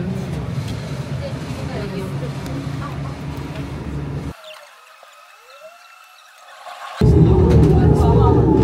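Steady low rumble of a cable car station with background voices. About four seconds in it cuts off abruptly to a quiet stretch holding only faint high tones, and the loud low rumble returns near the end.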